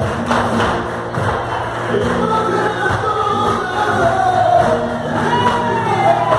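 Live flamenco bulerías: voices singing long, wavering held notes over sharp percussive hand claps.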